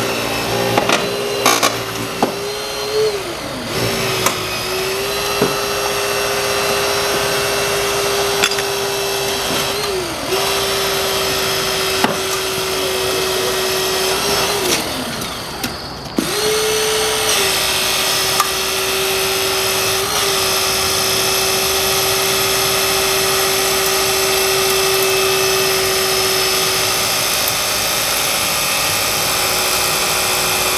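Battery-powered hydraulic rescue cutter running with a steady motor whine. Its pitch sags and recovers about three times as the blades bear down on the car's frame. A few sharp cracks come near the start.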